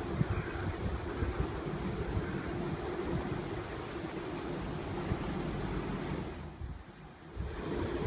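Wind buffeting the microphone: a steady, low noise that drops away briefly near the end.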